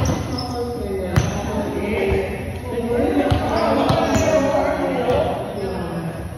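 A ball being struck and bouncing on a hard floor, several sharp thumps roughly a second apart, over the chatter of several people's voices.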